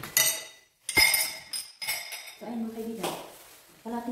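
Salvaged dishware being handled: two sharp ringing clinks about a second apart, each ringing on briefly.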